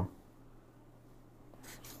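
Faint brush-on-paper sound of an ink brush painting strokes, with a brief soft swish near the end, over a faint low hum.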